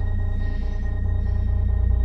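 Ominous background score: a deep, steady low drone with a thin sustained high tone above it.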